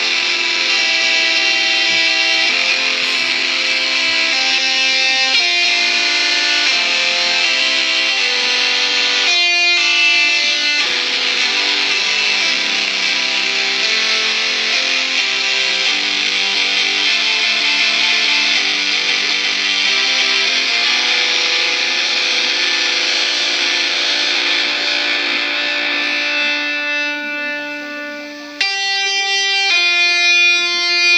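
GarageBand Smart Guitar chords played through an iPhone's speaker as the chord strips are tapped, one ringing chord after another, changing about once a second. Near the end the sound fades away, then a new chord strikes suddenly.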